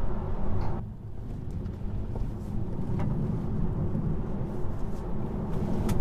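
Steady low road and tyre rumble inside the cabin of a moving Tesla Model 3 Performance, an electric car, so no engine note is heard. The noise dips briefly about a second in.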